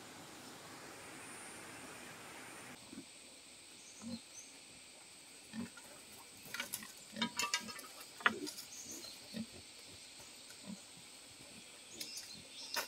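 Pigs grunting: short, low grunts about every second or so, with rustling and small clicks between them. A steady hiss fills the first three seconds and cuts off abruptly.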